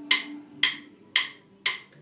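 Drum kit played with sticks: four sharp, clicky strokes evenly spaced about half a second apart, keeping a steady beat for a reggae groove.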